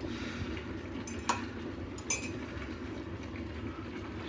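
Kitchen sounds while drinks are being made: a steady low rumble, with two light clinks about a second and two seconds in.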